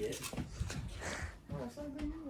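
Quiet, indistinct voices in short fragments, with soft rustling and low bumps of movement.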